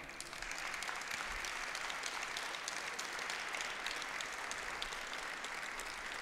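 Audience applause: many hands clapping at a steady level.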